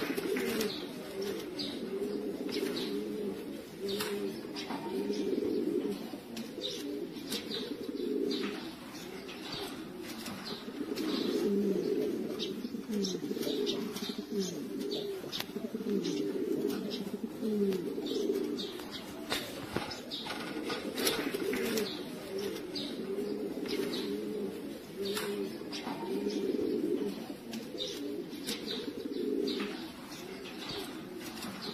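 Domestic pigeons cooing continuously, many birds overlapping in a low, rolling chorus, with scattered short clicks and taps among them.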